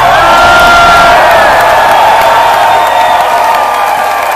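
Concert audience cheering and whooping right after a song ends, with a few drawn-out shouts standing out over the crowd noise. It is loud throughout.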